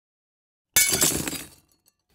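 Glass-shattering sound effect: a sudden crash a little under a second in, with tinkling shards dying away over about a second and a few last tinkles near the end.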